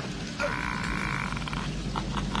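A man's drawn-out, strained growling cry on a film soundtrack. It starts about half a second in and lasts about a second, followed by a few short sharp sounds.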